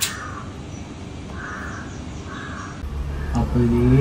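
Crow cawing three times: short, harsh calls a little under a second apart.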